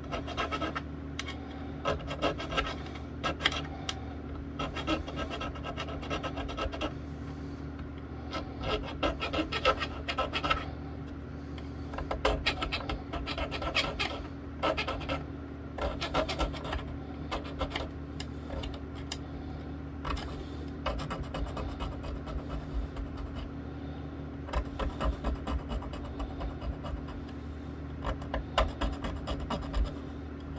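Small metal file rasping across the sharp fret ends on a bass guitar's rosewood fretboard, in groups of quick strokes with short pauses between, dressing down fret ends left sharp from the factory.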